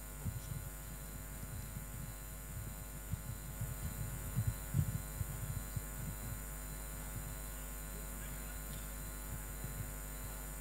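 Steady low electrical hum from the sound system, with a scatter of faint low thuds over the first six seconds or so.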